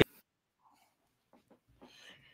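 Near silence after a word cuts off right at the start, with a few faint soft ticks near the end.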